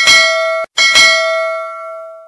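Notification-bell sound effect: a bell ding that is cut off after about half a second, then a second ding about three-quarters of a second in that rings on and fades away.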